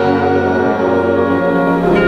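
A high school wind ensemble playing sustained brass-led chords. Near the end the chord changes and deep low-register notes come in.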